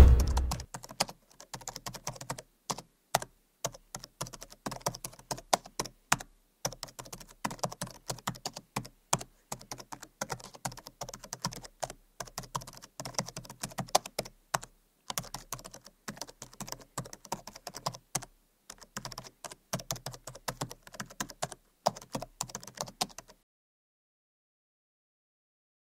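Computer keyboard typing sound effect: a fast, irregular run of key clicks as text is typed out, stopping just before the end.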